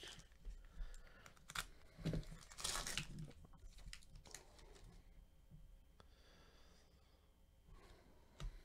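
Foil wrapper of a trading-card pack being torn open and crinkled by hand, the loudest tearing about two to three seconds in, then fainter rustling as the cards come out.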